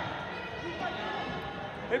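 Gym ambience during a wrestling match: a low murmur of spectators with faint scattered voices. A man's shout begins right at the end.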